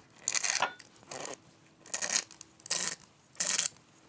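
Hand-held grinder twisted in short rasping bursts, about five in a row roughly two-thirds of a second apart, grinding salt into an oil and lemon dressing.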